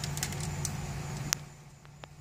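A steady low hum with a few sharp clicks. The hum drops away about one and a half seconds in.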